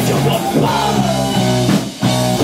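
Live rock band playing an instrumental passage: electric guitar, bass and drum kit together in a loud riff, with a brief drop-out just before the end.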